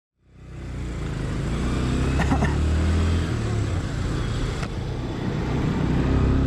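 Motorcycle engine running while the bike is ridden, with wind noise over the handlebar-mounted action camera's microphone; the sound fades in at the start and the engine note drops a little about three seconds in.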